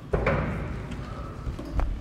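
A heavy insulated cold-room door unlatched with a loud clunk and pulled open, followed by a low rumble and another sharp knock near the end.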